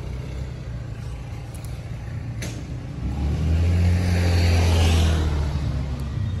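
A motor vehicle passing close by: a steady low traffic rumble swells from about three seconds in into a louder engine hum with tyre hiss, peaks, and fades away near the end. A brief click comes a little before the vehicle swells.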